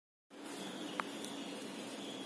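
Steady background hum of a small room, with one faint click about a second in.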